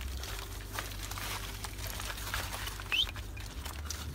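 Hooves of laden pack donkeys clattering over loose scree, irregular knocks of stone on stone, over a low steady rumble. A brief high rising chirp sounds about three seconds in.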